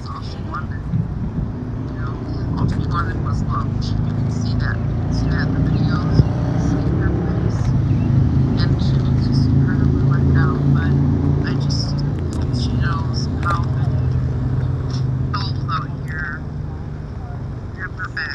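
A low engine rumble that swells for several seconds, peaks near the middle and fades toward the end, like an engine passing. Faint voices and short high chirps sound over it.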